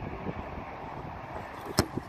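Steady wind noise on the microphone of an open rugby field, with one sharp click near the end.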